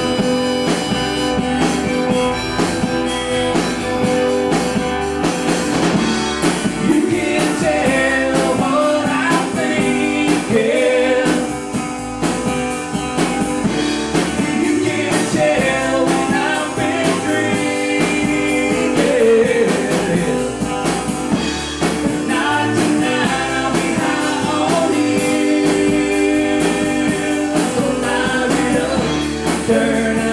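Small rock band playing live: drum kit with acoustic and electric guitars strumming chords, and a melodic line wavering over them from about a quarter of the way in.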